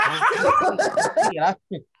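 People laughing over a video call: high, excited laughter in quick bursts that breaks off briefly, then another short laugh near the end.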